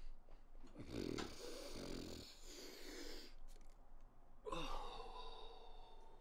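A man snorting lines of powder up his nose: a long hard sniff about a second in, then a shorter sniff with a breathy, voiced gasp near the end.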